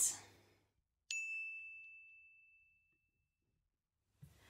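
A single high, bell-like ding struck about a second in, ringing on one clear tone and fading away over about a second and a half: a chime effect marking a title card.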